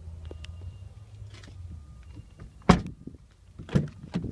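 A low steady hum, then two sharp clunks about a second apart, the first the louder: a pickup truck's rear door latch being released and the door pushed open.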